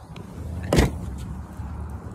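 A single short, sharp knock about three-quarters of a second in, over a steady low rumble.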